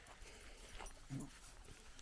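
A young calf gives one short, low grunt about a second in; otherwise it is quiet, with faint rustling.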